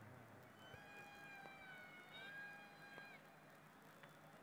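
Near silence, with a faint, drawn-out pitched tone lasting about two and a half seconds that dips slightly in pitch midway.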